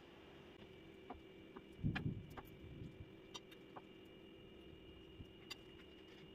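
Faint handling sounds of boiled corn cobs being worked by hand: scattered small clicks and rustles as the husks are braided and tied, with one soft thump about two seconds in, over a faint steady hum.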